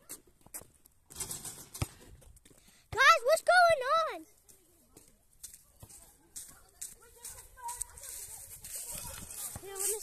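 Footsteps crunching and rustling through dry fallen leaves, in short uneven crackles. About three seconds in, a young person's wordless voice rings out for about a second, the loudest sound here.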